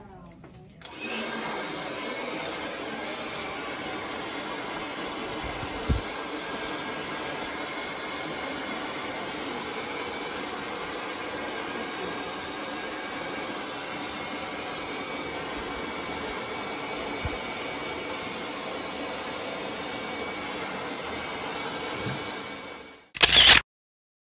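Handheld hair dryer running steadily as wet hair is blow-dried. It comes on about a second in and dies away near the end, followed by a short loud burst of noise.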